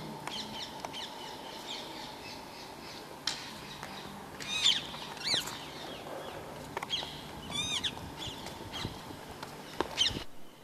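Birds calling: short, arched chirps repeated at irregular intervals over a faint steady outdoor background, the loudest a few seconds in and again near the end.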